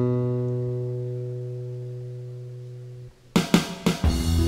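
Washburn acoustic guitar: one chord struck and left ringing, fading away over about three seconds. Near the end, a few sharp hits lead the full band in.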